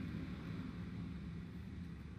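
A steady low hum of room noise, with no distinct events.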